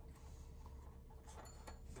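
Faint, scattered clicks and taps of metal double-pointed knitting needles as a stitch is worked, over a low steady room hum.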